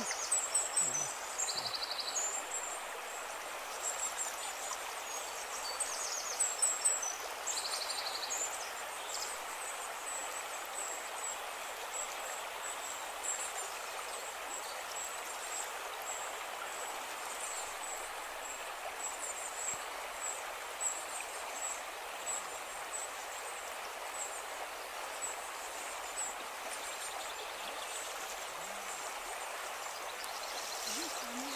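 Shallow forest stream running over rocks and logs, a steady rushing of water. Short, high chirps repeat above it, thicker in the first several seconds.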